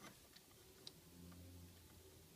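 Near silence with two faint clicks of plastic Lego pieces as the small robot figure is handled, the second one sharper.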